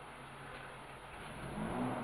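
Vehicle engine running at low speed as it creeps along a dirt track, with a brief swell in the engine note near the end.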